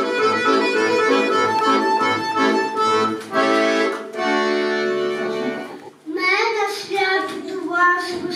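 Accordion playing an introduction in held chords. The playing breaks off about six seconds in, and a child's voice begins.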